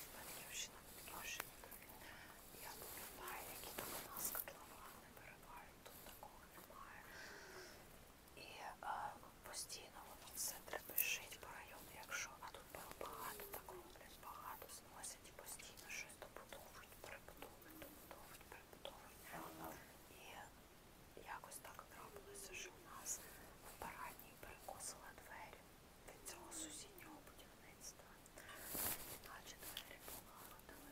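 A woman talking in a whisper close to the microphone, the soft hissing consonants carrying most of the sound.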